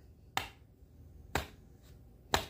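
Two sharp, short clicks about a second apart.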